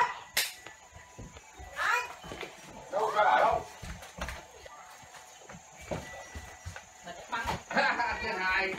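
A young child's voice giving three short wordless calls, one near the start, one about two seconds in and a louder one about three seconds in, each rising and falling in pitch, with a few light knocks between them.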